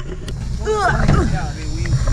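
A woman laughing, with a few wordless voiced sounds, over a steady low rumble.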